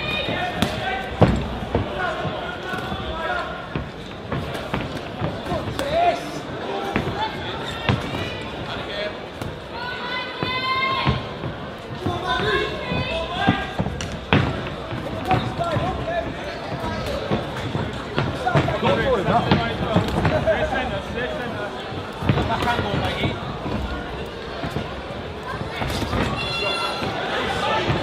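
Gloved punches landing with irregular thuds during a fighting exchange, with scattered shouting voices.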